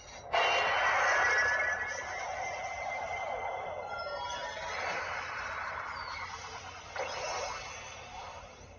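Bandai CSM Orb Ring toy playing its electronic sound effect after a card is swiped through it. The sound starts suddenly and loudly just after the swipe, runs on with several ringing tones and fades toward the end.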